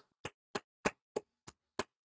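Hands clapping in an even rhythm, about three sharp claps a second, seven in all, in celebration.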